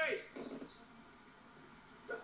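A person's voice trails off at the start, followed by a few short, high, falling chirps from a small bird, then faint background hiss.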